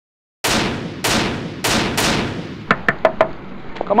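Gunshot sound effects: four sharp shots roughly half a second apart, each with a long echoing tail, followed by a few short, high ringing pings.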